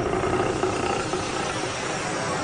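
Dramatic television-serial background score: a sustained, steady drone of layered tones with a low rumble beneath it.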